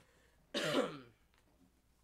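A person clears their throat once, a short rasping sound with a falling pitch lasting about half a second.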